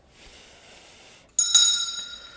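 Altar bell struck once, about one and a half seconds in, with a bright ringing that fades slowly. It marks the elevation of the chalice at the consecration.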